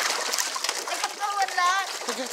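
Large fish splashing and thrashing at the water's surface as they snatch floating cheese puffs, in quick irregular splats. About midway there is a high, wavering cry.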